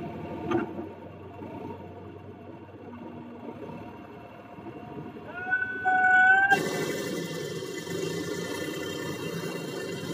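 Diesel tractor engine running while its hydraulic trolley tips a load of soil, with a knock about half a second in. Near the middle a high, slightly rising whine sounds for about a second, then the engine sound jumps suddenly louder and fuller.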